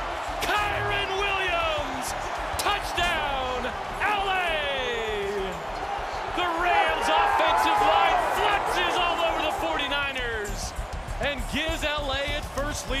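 Shouting and whooping voices over background music, with scattered thuds and knocks.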